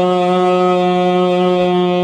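A man's voice holding one long sung note at a steady pitch, reached after a glide up just before.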